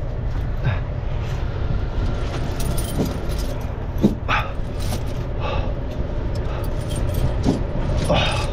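Semi truck running with a steady low rumble, with a few short sharp sounds about three and four seconds in and again near the end.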